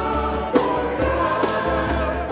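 Church choir singing with instrumental accompaniment over a steady bass line, a bright percussion hit marking the beat about once a second.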